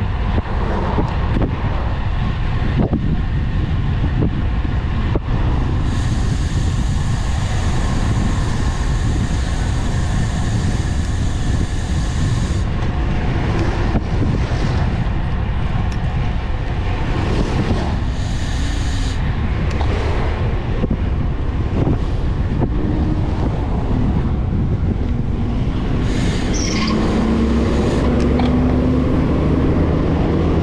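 Wind buffeting the microphone of a moving road bike, with road traffic going by. Near the end a dump truck's engine passes close alongside, its tone rising as it pulls by.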